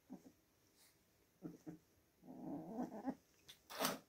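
Oriental kittens play-fighting, with short scuffles, a low growl lasting about a second in the middle, and a sharper, louder sound near the end.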